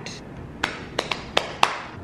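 About five sharp, short taps or clicks, a few tenths of a second apart, starting about half a second in.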